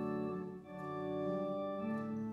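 Church organ playing a hymn in held chords, with a short break a little over half a second in before the next chord.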